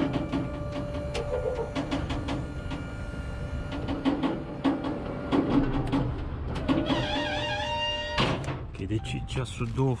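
Electro-hydraulic pump of a lorry's folding tail lift running with a steady whine while the platform is powered up and folded away. It stops with a clunk about eight seconds in.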